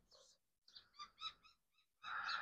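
Near silence, with a faint run of short bird chirps starting about half a second in and lasting about a second.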